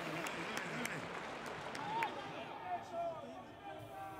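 Faint pitch-side ambience of a football match in a near-empty stadium: a steady hiss with distant shouts and calls from players, strongest about two to three seconds in. A few light, sharp knocks come in the first half.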